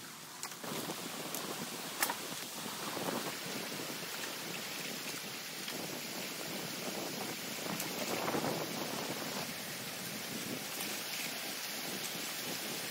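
Water splashing and pouring through a breach being opened in a beaver dam of sticks and mud. The flow swells a couple of times as the gap is worked open, with a few sharp clicks, the loudest about two seconds in.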